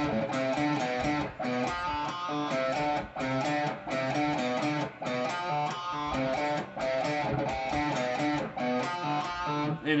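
Electric guitar (a Schecter Diamond Series Telecaster-style) in drop D tuning, played through an amp: a grooving single-note riff on the low strings, choppy notes with short breaks between phrases.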